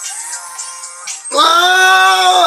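A recorded R&B song plays faintly. About a second and a half in, a man's loud, high, held sung note cuts in over it, singing along.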